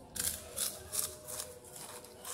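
Close-up crunching of a Pringles potato crisp being bitten and chewed: a series of short, crisp crunches, about two or three a second.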